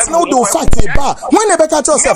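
A person talking rapidly and animatedly in a local language, with sharp clicks between the words.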